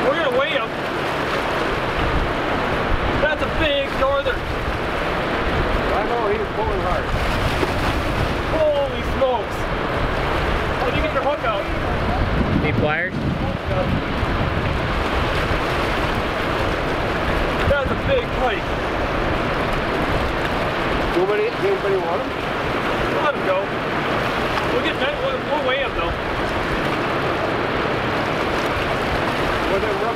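Steady rush of turbulent spillway outflow, whitewater churning and washing against a rocky shore. A few faint voices come through it now and then.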